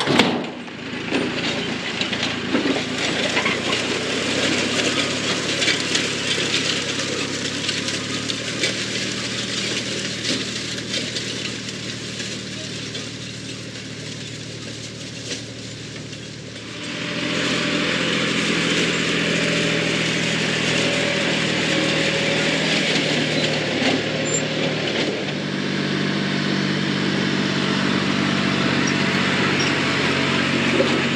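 Tractor engine running steadily while it pulls a grain drill. About halfway through it becomes louder and fuller, with a steady low engine note, as the tractor and drill come close.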